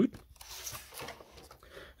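Faint rustling and handling noise from hands moving tools about on a workbench, with a few soft ticks.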